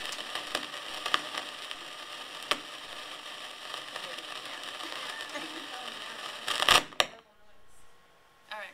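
Podium gooseneck microphone being bent and adjusted by hand: handling noise, a steady crackle with scattered clicks and knocks, and a loud rustling burst with a sharp click near the end before the noise stops abruptly. The mic makes this noise every time it is touched.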